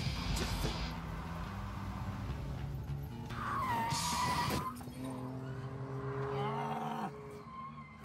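Car engine and driving noise with a short tyre squeal about three to four seconds in, mixed with music.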